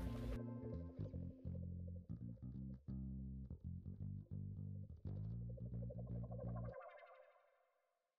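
Background music on plucked guitar with bass. The bass stops abruptly a little before the end, and the rest fades away.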